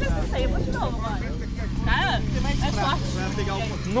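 People talking over background music with a steady low bass line.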